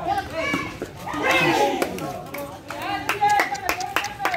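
Spectators' voices shouting and calling out, loudest about a second in, with several sharp smacks in the second half.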